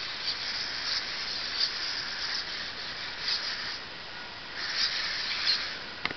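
Hexapod robot's leg servos whining and buzzing as it walks, a high-pitched sound that swells louder every second or so as the legs move.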